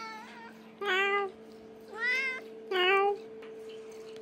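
Orange tabby cat meowing: a faint short meow at the very start, then three loud meows about a second apart, the middle one rising in pitch. A steady electrical hum runs underneath.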